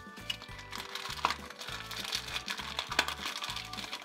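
Background music with a steady beat, under the crinkling of a small cardboard box being opened and a low-density polyethylene bag pulled out of it. Two sharp clicks stand out, one about a second in and one about three seconds in.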